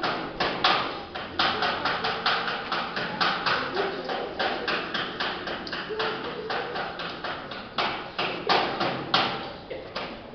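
Rapid hammer blows on metal at a welding table, about three to four strikes a second, with a brief pause shortly before eight seconds in and stopping a little after nine seconds in.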